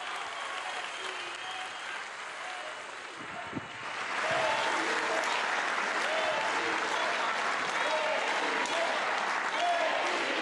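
Crowd applause, swelling about four seconds in and then holding steady, with scattered voices calling out through it.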